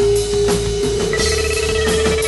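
Psychedelic rock band playing an instrumental jam. A single high note is held throughout and steps up slightly in pitch about halfway through, over a steady drum beat of roughly two hits a second.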